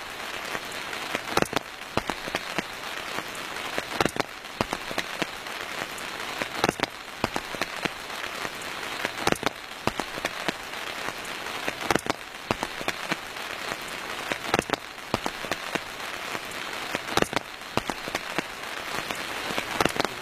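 Steady rain falling, with frequent sharp, irregular drop impacts close by.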